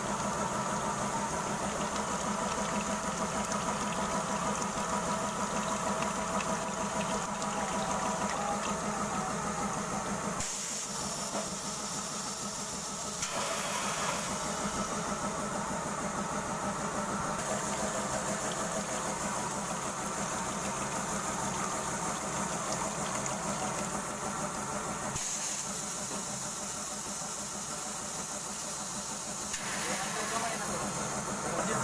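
PVC pipe socketing machine running with a steady hum, while cooling water hisses from its coolant nozzles onto the pipe on the forming mandrel. The tone of the hum and hiss shifts abruptly a few times.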